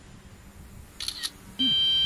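A short shutter-like click about a second in, then a loud, steady electronic alert beep from about halfway through: the DJI Mavic Pro's low-battery warning tone, leading into its spoken "low battery warning".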